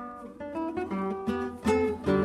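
Classical nylon-string guitar played by hand: a short phrase of several plucked notes in quick succession, demonstrating the plain single-note and strummed style of the early popular guitar.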